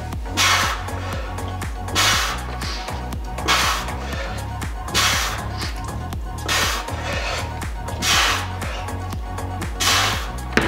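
Background music with a steady bass line, over which a man's sharp exhaled breath comes about every second and a half, one with each pull of a one-arm kettlebell row.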